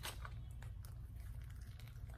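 Faint wet mouth sounds of marshmallows being pushed into already full mouths, with a couple of soft clicks near the start, over a low steady hum.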